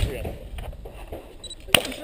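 A single sharp crack about three-quarters of the way in, over faint voices.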